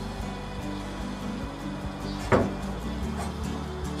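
Soft background music of sustained low notes, with a single knock about two seconds in.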